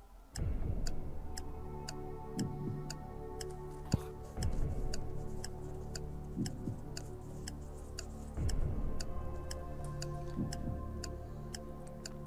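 Quiz-show countdown sound effect: a steady clock ticking over a sustained low music bed, starting about half a second in.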